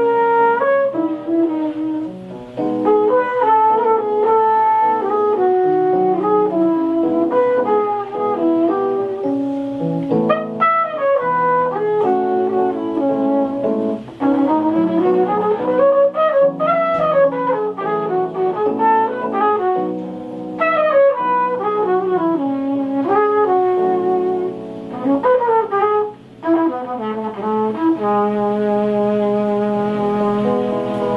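Live jazz: a flugelhorn plays a melodic solo over digital piano chords, with quick rising and falling runs in the middle, settling into held notes near the end.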